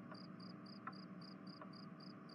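Faint, steady chirping of crickets, about four short high chirps a second, over a low hum.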